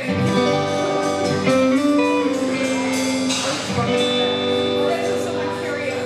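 Live blues band music: guitar chords and notes held and ringing, the closing bars of a song.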